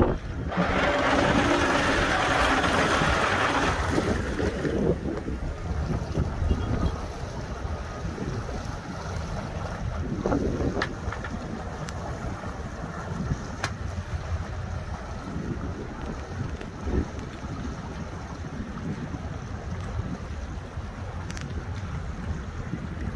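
Several outboard motors on a large speedboat run at low speed as the boat pulls away from the dock, with the propellers stirring the water. A loud rushing hiss fills the first few seconds, then the sound settles to a steadier low rumble with wind on the microphone.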